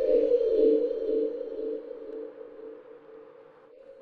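A sustained drone from an electronic film score, a steady mid-pitched hum. It swells in the first second and then fades away toward the end.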